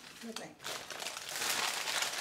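A sheet of used baking parchment is pulled free and crumpled by hand, with irregular crinkling and rustling that starts about half a second in and grows louder toward the end.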